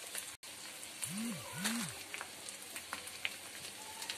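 Spice paste frying in oil in a steel kadai, with a steady sizzle and a few faint clicks. About a second in, two short low tones rise and fall.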